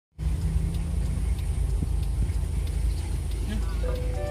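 Steady low engine and road rumble heard from inside the cab of a moving vehicle.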